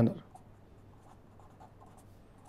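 Marker pen writing block capitals on paper: faint, short scratching strokes, one per pen movement.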